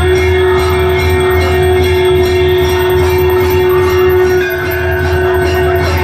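Conch shell (shankh) blown in one long, steady note during a Hindu aarti, with bells ringing and music around it.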